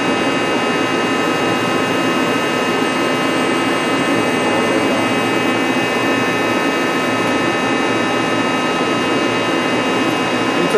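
Takisawa TC-4 CNC lathe running steadily: an even mechanical din with several constant high-pitched whines over it.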